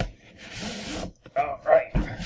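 A package's wrapping torn open by hand: one ripping sound lasting under a second, followed by a few short vocal sounds.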